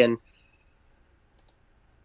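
A spoken word trails off, then near silence broken by two faint, short clicks about a second and a half in.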